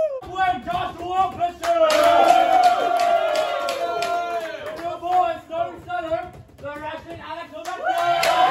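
A group of young men shouting and cheering together in a locker room, swelling into loud group yelling about two seconds in, with hand claps and slaps among the voices.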